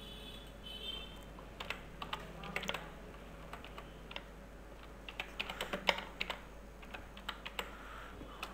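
Computer keyboard keys typed in two quick runs of faint clicks with a pause between them.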